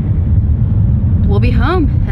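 Steady low rumble of a moving car heard from inside the cabin, from the road and engine at driving speed.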